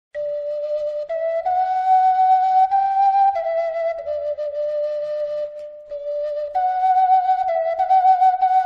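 A solo flute playing a slow melody, one held note after another, starting suddenly and with a brief break near the middle.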